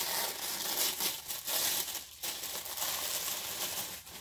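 Paper wrapping crinkling and tearing as it is pulled off a makeup palette, a continuous rustle that stops near the end.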